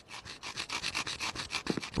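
A plastic toothbrush handle scraped back and forth against the ground in quick, even strokes, about several a second, as it is ground to a point to make a shank.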